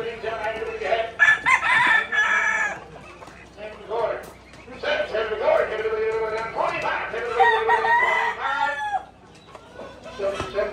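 Roosters crowing, several long crows overlapping each other, along with chicken clucking. The crows are loudest a little after the first second and again around the seventh and eighth seconds.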